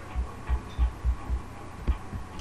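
Low, dull thuds, unevenly spaced at roughly three a second, over a faint steady electrical hum, with one sharp click just before the end.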